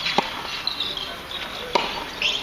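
Tennis ball struck sharply twice, about a second and a half apart, during a rally on a hard court. High chirps sound in the background.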